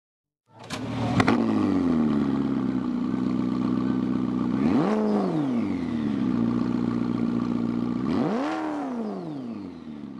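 A vehicle engine catches with a couple of sharp clicks, settles down to a steady idle, and is revved twice, each rev rising and dropping back to idle, at about five and eight and a half seconds in.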